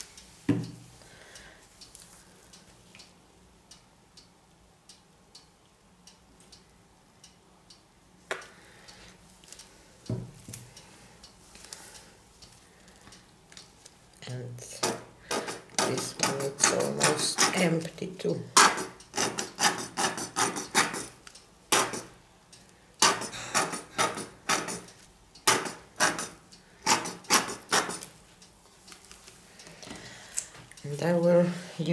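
Plastic squeeze bottle of acrylic paint sputtering as it is squeezed over a canvas: air and paint spit out of the nozzle in a rapid, irregular run of sharp spurts that starts about halfway through. A few single knocks come before it.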